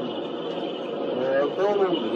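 Speech: a man talking, with a short lull in the first half, over a steady background hiss.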